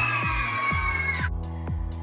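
A group of children holding a loud shouted "Yeah!", which breaks off just over a second in, over upbeat electronic dance music with a steady kick-drum beat that runs on alone after the shout.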